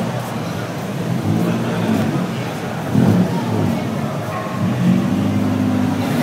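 Honda Integra's four-cylinder engine revved hard in three bursts, the last held longer at a steady pitch: revving against the rev limiter.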